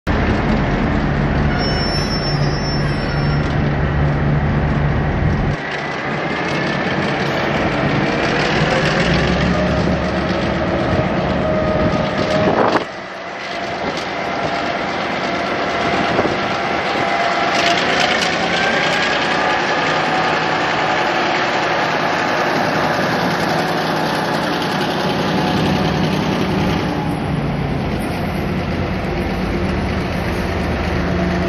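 V/Line Y-class diesel-electric shunting locomotive running as it hauls a rake of passenger carriages slowly past, its engine note steady and dropping noticeably about five seconds in. Drawn-out higher tones come and go as the train rolls, and a single sharp knock sounds about 13 seconds in.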